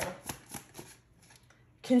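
A tarot deck being shuffled by hand: a quick run of light card clicks and flicks over about the first second, fading out.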